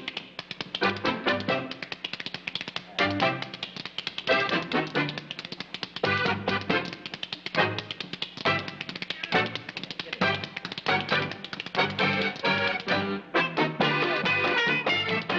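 A pair of spoons clicked in a fast, dense rhythm over a polka played by a dance band's rhythm section, with short band chords at intervals. An accordion takes over near the end.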